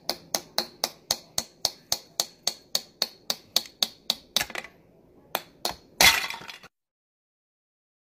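A small hammer striking and cracking brittle pieces in a box: sharp cracks at a steady rate of about four a second, then two scattered hits, then a louder crash of something breaking about six seconds in.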